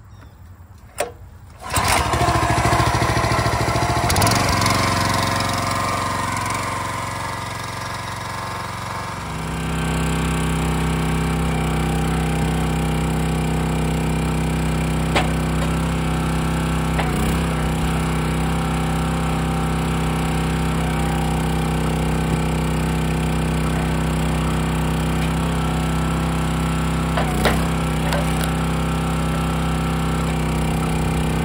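A Kohler SH Series 6.5 single-cylinder overhead-valve engine on a log splitter, recoil pull-started and catching about two seconds in. Its note changes, and about nine seconds in it settles into a steady run, with a few brief sharp knocks later on.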